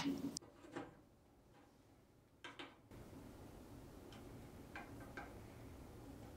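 A few faint, irregular clicks and taps of small metal parts being handled, over a faint room hiss.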